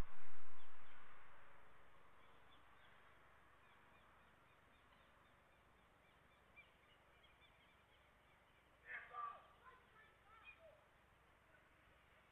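Air-traffic-control radio feed: a hiss that fades away over about two seconds after a transmission ends, then near silence broken by a brief burst of faint chirps about nine seconds in.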